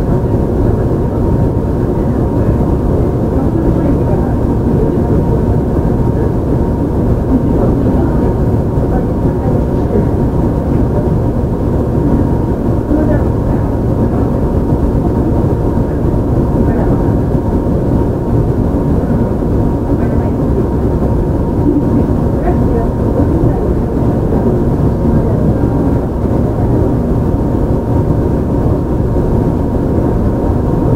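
Running sound of a JR Shikoku 7000 series electric train with Hitachi GTO-VVVF control, heard from inside the car: a steady rumble of wheels and running gear under a faint steady hum, holding even with no rise or fall in pitch.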